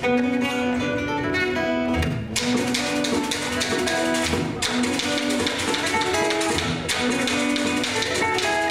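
Live Malagasy acoustic guitar music: a steel-strung acoustic guitar fingerpicked in quick runs of notes, with light percussion taps and a few stronger accents on the beat.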